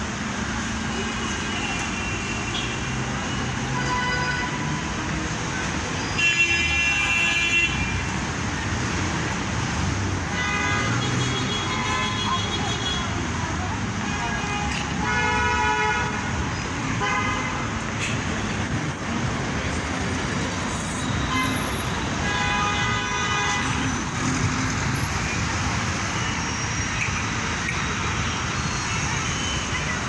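Busy city street traffic: a steady noise of engines and tyres with car horns sounding several times. The longest and loudest honk comes about six seconds in and lasts over a second.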